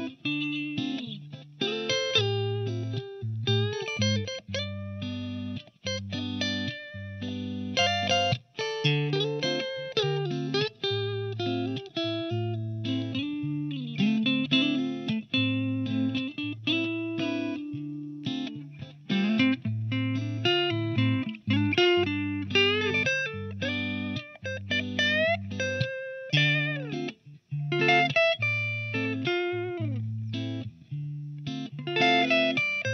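G&L Legacy HB electric guitar played through a Mesa Boogie Mark V amp on its clean channel at the 10-watt setting into a Marshall 1960 cabinet. It plays a continuous mix of chords and single-note lines with string bends.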